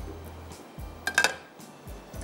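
A single clink of metal cookware about a second in, over soft background music.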